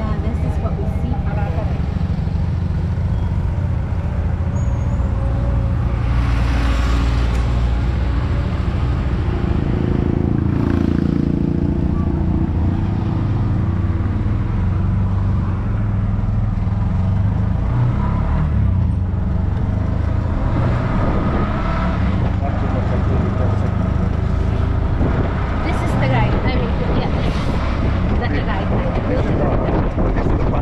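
Engine of a small open-sided passenger vehicle running, with road noise; about ten seconds in the engine note rises as it picks up speed.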